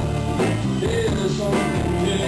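Live rock band playing a song on electric guitar, bass guitar and drums, with a male lead vocal. The recording is distorted.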